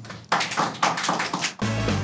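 Closing theme music: a quick run of sharp percussive hits, then a low held chord from about a second and a half in.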